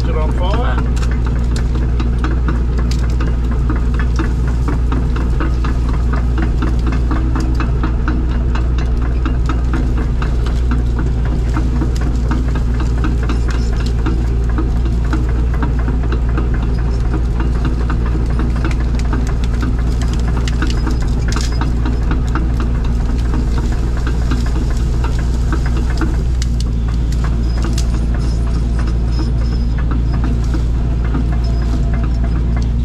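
The diesel engine of a compact tracked loader running steadily under load, heard from inside its cab, with a constant stream of clicks and rattles as the machine pushes dirt and brush.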